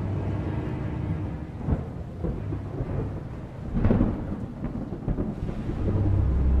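Thunderstorm sound effect: a low rolling rumble of thunder with rain-like hiss, a sharp crack about two seconds in and a louder thunderclap near four seconds.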